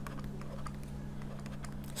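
Stylus on a tablet writing by hand: faint, irregular light ticks and scratches as the pen strokes the surface, over a low steady electrical hum.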